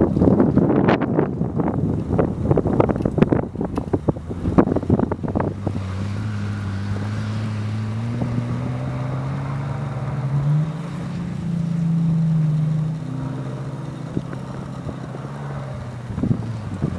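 Gusty wind buffeting the microphone for the first five seconds or so, then the Bentley Continental GTC's W12 engine held at steady revs that slowly climb in pitch as the all-wheel-drive car spins donuts in snow, loudest a little past the middle before it eases off.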